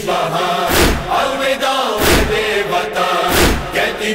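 Voices chanting a noha, the Shia mourning lament, with sustained sung lines over a steady beat of heavy thumps about every 1.3 seconds.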